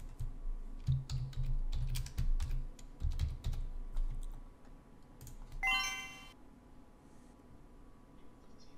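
Computer keyboard typing: a quick run of key clicks with soft knocks on the desk, stopping about four and a half seconds in. About five and a half seconds in comes a short electronic alert tone of several pitches at once.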